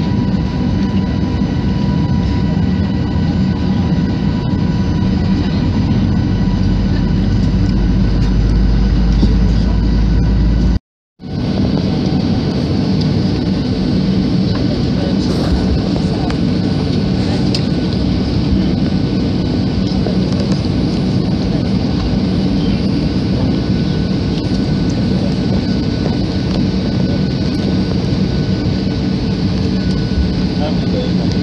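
Steady airliner cabin noise as the plane taxis on the ground: the engines' hum and the rush of cabin air, with a few steady tones running through it. The sound cuts out completely for about half a second roughly eleven seconds in.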